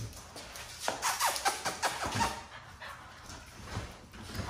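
Pit bull dogs, an adult and a puppy, moving and playing on a concrete garage floor: a scatter of short clicks and scuffs with dog noises, mostly in the first half, then quieter.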